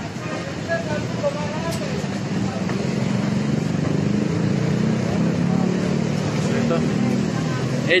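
Steady road traffic noise from a busy multi-lane city road, a low rumble that grows louder from about three seconds in.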